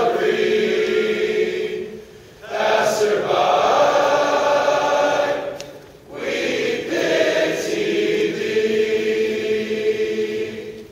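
Large male choir singing sustained chords in long phrases, breaking off briefly about two seconds in and again about six seconds in.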